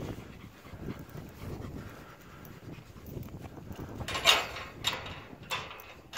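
Footsteps swishing through grass, then three loud panting breaths about four seconds in.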